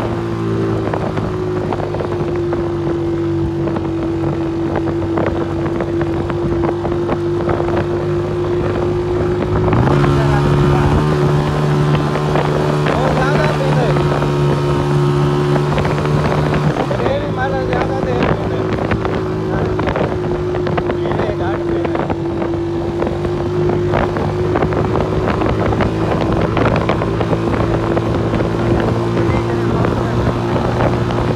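Honda motorcycle engine running steadily under way, with wind buffeting the microphone. Between about ten and seventeen seconds in, the engine note shifts and gets a little louder, then settles back to its earlier steady note.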